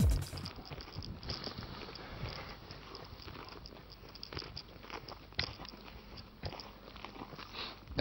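Faint crackling and rustling with scattered small clicks, the handling and wind noise of a handheld camera's microphone moving about outdoors.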